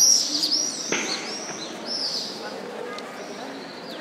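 Small birds chirping with short, high, repeated calls, loudest in a burst at the very start, with one sharp click about a second in. A murmur of voices runs underneath.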